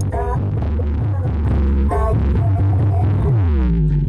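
Remixed dance music played very loud through a large carnival sound system, dominated by a deep, throbbing bass. Short pitched stabs come at the start and about two seconds in, and a falling pitch sweep runs near the end.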